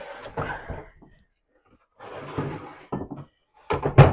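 Items being handled and shifted on a cabinet shelf: rustling and sliding with a few light knocks.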